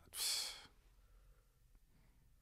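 A person sighing: one short, breathy exhale lasting about half a second near the start, followed by faint room tone.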